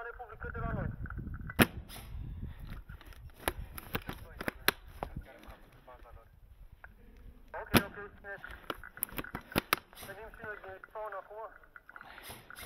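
Airsoft guns firing: two sharp cracks, about one and a half seconds and seven and a half seconds in, with scattered lighter clicks and pops between them.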